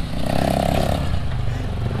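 Off-road vehicle engines idling nearby: a steady low running note, with a brief higher hum in the first second.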